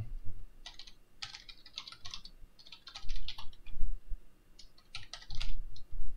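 Typing on a computer keyboard: runs of quick key clicks broken by short pauses.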